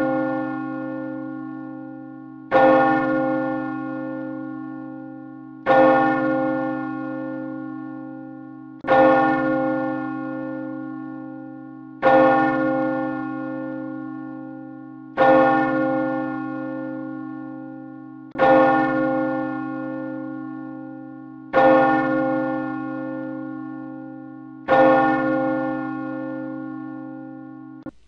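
A single church bell tolling, struck about every three seconds, each stroke ringing out and dying away before the next.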